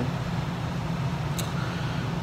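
Steady low background hum of room noise, with one faint click about a second and a half in.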